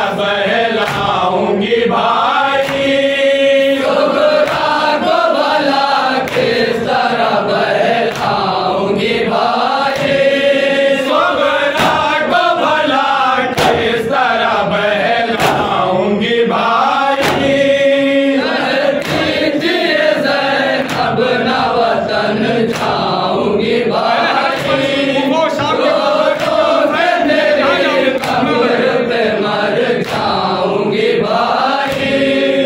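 Nauha lament: a male reciter chanting into a microphone while a group of men chant along in unison, over a steady beat of hands striking chests (matam).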